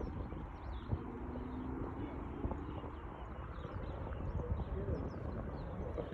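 Wind rumbling on the microphone, with birds calling throughout in short high chirps and harsher calls, among them hadeda ibises. A low steady hum comes in about a second in and lasts close to two seconds.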